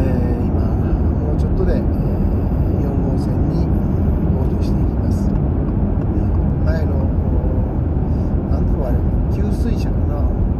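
Steady road and tyre rumble inside the cabin of a Subaru Outback cruising through an expressway tunnel.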